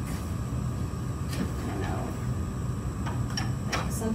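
A few light clicks and rustles from paper craft materials being handled on a table, over a steady low hum of room noise.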